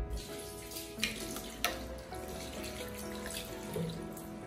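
Bathroom sink tap running, with two sharp clicks in the first two seconds, over background music.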